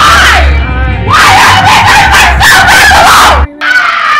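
A person screaming loudly: a short scream at the start, then a longer, wavering high scream of about two seconds. Under it runs a low rumble that stops suddenly near the end.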